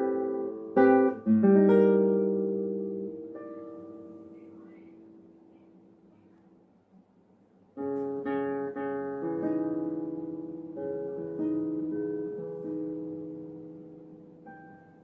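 Classical nylon-string guitar played solo: a few plucked chords in the first second and a half are left to ring and die away over several seconds into a brief pause, then fingerpicked notes and chords start again about eight seconds in.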